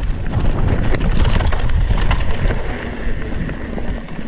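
Cross-country mountain bike descending a loose gravel and rock trail: tyres crunching over the stones and the bike rattling, with heavy wind rumble on the camera microphone.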